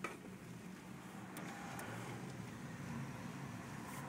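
Car interior noise while driving: a steady low engine and road hum, with a short click right at the start and a couple of faint ticks around the middle.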